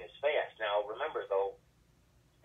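Speech only: a man talking for about a second and a half, then a pause.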